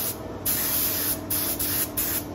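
Texturizing paint spraying with a loud hiss in short bursts. The spray stops briefly near the start, then returns with two quick breaks.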